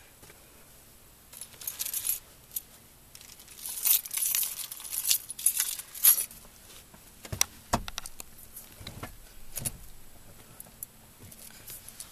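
A bunch of keys jingling in several short bursts, with a few dull thumps about two thirds of the way through.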